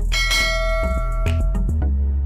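A single bell-chime sound effect rings just after the start and fades over about a second and a half, over background music with a deep bass.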